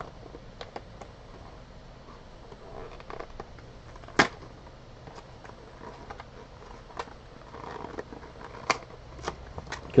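A sealed cardboard box of baseball cards being opened by hand: soft rustling of cardboard and packaging with scattered sharp clicks and taps, the loudest about four seconds in.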